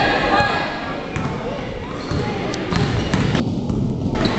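Basketball bouncing on a hardwood gym floor, several short sharp thuds, among the voices of players and spectators.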